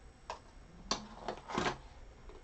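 Cardboard trading-card box being handled and opened: a few light clicks and taps, the sharpest about halfway, then a short scraping rustle of the cardboard flap.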